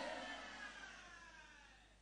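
The echo of a man's shouted preaching voice dying away, fading steadily to near silence.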